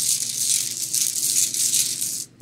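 Rune stones being shaken together by hand before one is drawn, a steady rattling with a quick shaking pulse.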